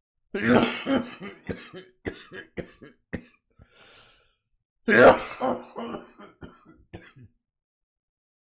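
A man coughing hard in two fits, one starting about half a second in and one about five seconds in, each a loud first cough trailing off into shorter, weaker ones: a smoker's coughing fit from a blunt.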